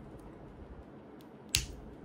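A single sharp plastic click about one and a half seconds in, as fingers pry at the flip-off cap of a small glass vial, over faint room tone.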